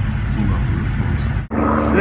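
Car engine running with a steady low rumble; it breaks off abruptly about one and a half seconds in and a different steady hum follows.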